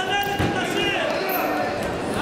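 A single dull thud about half a second in, over men's voices calling out in a large, echoing sports hall.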